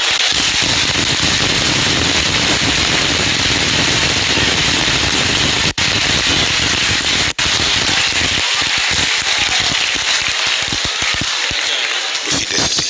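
Large audience applauding, a loud dense wash of clapping that breaks up into scattered separate claps and tapers off over the last few seconds.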